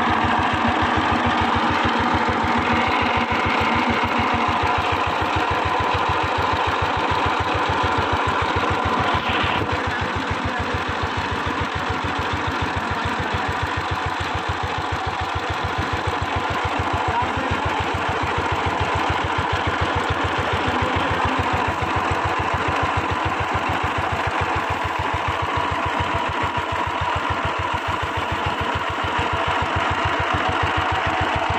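A power tiller's single-cylinder diesel engine idling steadily, with a rapid, even beat of firing strokes.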